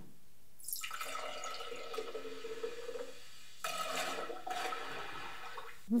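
AI-generated soda sound effects: a soft rush of fizzing, pouring liquid. It starts just under a second in, breaks off briefly a little past three seconds, then resumes.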